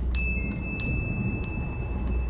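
A low steady hum with thin, high ringing tones held over it, chime-like, and a few faint ticks.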